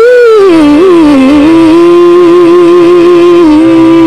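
A single loud pitched tone from the clip's soundtrack, music-like, wavering up and down for about a second and a half and then held on one steady note.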